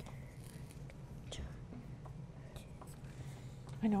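Pencils scratching faintly on paper as children write, over a low steady room hum.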